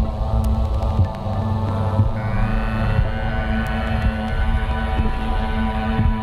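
Electronic ambient drone played live on synthesizers: layered sustained tones over a steady low hum, with a brighter high layer entering about two seconds in.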